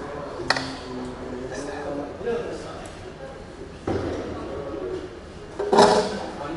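A metal stirring spoon clinking against a stainless-steel stockpot of grain mash: one sharp clink about half a second in and a louder clatter near the end, over voices talking in the background.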